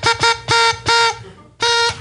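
A horn toots the same note five times, some short and some held longer. It plays through the room's speakers as the start of a novelty party video.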